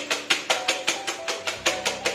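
Wire whisk beating eggs fast in a stainless steel bowl, an even run of quick metallic clatters, several strokes a second, as air is whipped into the eggs.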